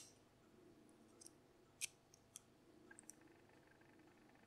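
Faint, scattered metal clicks as snap-ring pliers work the small retaining clip at the back of a Miwa DS wafer lock's core, the clearest a little under two seconds in.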